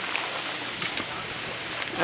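A steady rushing hiss of outdoor noise, with a faint click about a second in and another near the end as the parts of a telemark touring binding are handled.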